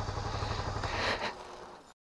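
Motorcycle engine idling with a low pulsing hum, with a brief clatter about a second in. The sound then fades away and cuts to silence near the end.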